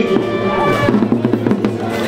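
A marching band playing, with drums over steady held notes.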